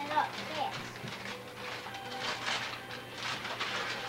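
Background music with a held note, over repeated rustling and tearing of gift wrapping paper as a present is unwrapped.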